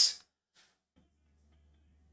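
Near silence: room tone with a faint low hum that comes in about a second in.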